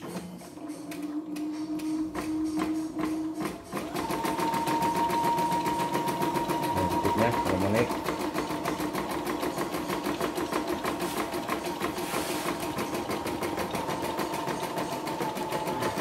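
CNY E960 embroidery machine test-stitching a design, its needle going in a fast, even rhythm. A steady motor whine runs under it and steps up in pitch about four seconds in.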